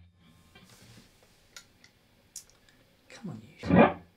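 An electric guitar chord through a delay pedal with a very long delay time: a faint fading ring, then the chord's echo comes back loudly about three and a half seconds in.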